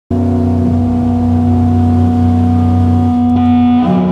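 Amplified electric guitar and bass holding one low drone chord from a doom metal band on stage. It comes in abruptly and rings steadily, then shifts to a different note just before the end.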